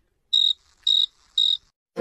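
Cricket chirping: three short, even chirps about half a second apart against dead silence, the comic 'awkward silence' cricket sound effect.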